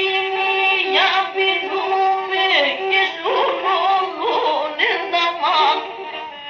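Pontic lyra (kemenche) playing an ornamented melody with quick slides, over a steady drone note.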